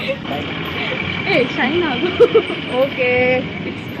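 Street traffic with a short vehicle horn honk, one steady note of about half a second, near the end.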